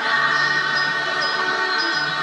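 Babembe choir singing together, holding a long sustained chord.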